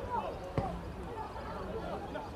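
A football kicked hard on a goal kick: a single thump about half a second in, with players' shouts on the pitch around it.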